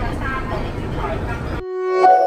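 Busy station ambience with indistinct voices and short pitched calls. About one and a half seconds in it cuts off abruptly and a sustained synthesized tone swells up, the start of a news outro jingle.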